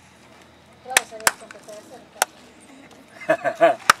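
Four single hand claps at uneven gaps, sharp and separate. They are a clap hearing test: one person claps behind the listener, who claps back each time she hears it. Brief murmured voices and a laugh come near the end.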